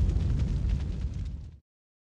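Low rumbling tail of a boom-like sound effect, with faint crackle on top, dying away and cutting off to silence about a second and a half in.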